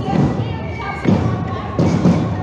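Big drums of a marching drum group beaten in a slow, heavy beat, roughly one low thump a second, with the voices of a street crowd over them.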